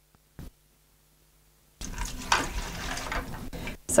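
Liquid poured from a cup into the hopper of a Graco GX21 airless paint sprayer: a steady pour starting about two seconds in and lasting about two seconds, filling the hopper so the feed tube to the pump inlet floods.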